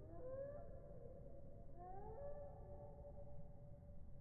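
An animal's drawn-out cries: a short rising call at the start, then a second call about two seconds in that rises and holds one steady pitch to the end.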